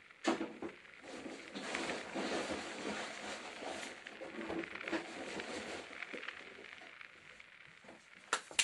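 A knock, then several seconds of muffled rustling and light clattering from behind a closed door, fading near the end: someone stowing things away in a storeroom.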